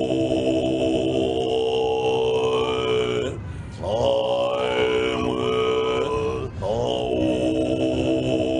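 Tibetan monks' throat-singing: a deep chanted drone held on long notes, with a steady high overtone ringing above it. The chant breaks for breath about three and a half seconds in and again about six and a half seconds in, and each new note slides up as it starts.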